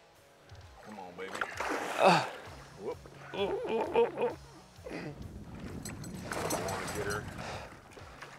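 Men's short excited exclamations over water splashing as a big muskie thrashes at the landing net beside the boat. The splashing is heaviest in the second half.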